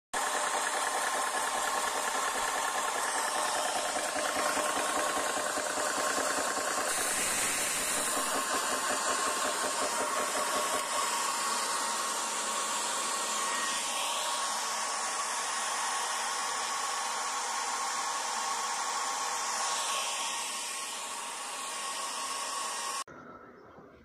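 Portable electric high-pressure compressor running steadily, filling a PCP air rifle's air reservoir through a fill probe in its fill port. It stops suddenly near the end.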